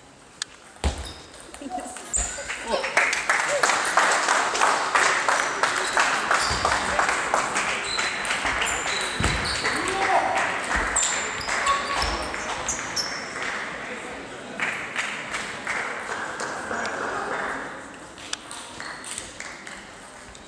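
Table tennis balls clicking on tables and bats in a busy sports hall, over crowd chatter. Short high squeaks, like sports shoes on the hall floor, come through now and then. The activity is loudest from about three seconds in and thins out near the end.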